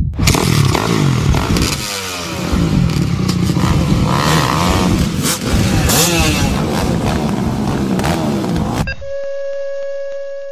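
Several motocross dirt bikes revving their engines together, the pitch rising and falling repeatedly with clattering and sharp clicks. About nine seconds in the sound cuts off abruptly to a single steady high-pitched hum.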